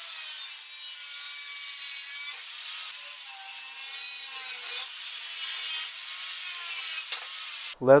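Angle grinder cutting through a steel bicycle seat post: a steady, high hissing whine from the disc biting the metal, its pitch wavering slightly as the cut goes on. It cuts off suddenly near the end.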